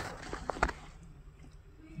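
A couple of small sharp clicks about half a second in, from multimeter test probes tapped against wiring terminals, over faint handling noise.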